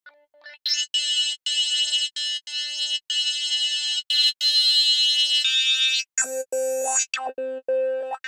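Spectrasonics Omnisphere software synth playing a repeated note through a low-pass and a band-pass filter in series. Its tone shifts as the filter offsets are moved, and resonant sweeps rise and fall near the end.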